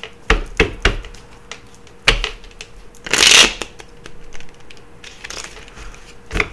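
A tarot deck being shuffled by hand to draw a clarifier card: a few sharp card snaps in the first second and again around two seconds in, then a half-second rush of cards about three seconds in, the loudest part, followed by softer card handling.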